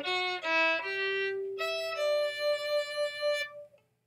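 Violin bowed through a short melodic phrase, the notes changing about every half second, then settling on two notes held together that stop about three and a half seconds in.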